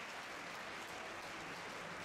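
Faint, steady hiss of background noise with no distinct events.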